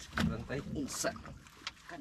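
Water splashing and dripping as a fishing net is hauled over the side of a wooden outrigger boat, with a brief sharper splash about a second in. A voice speaks briefly.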